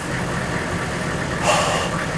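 A vehicle engine idling with a steady low rumble. A short breathy hiss comes about one and a half seconds in.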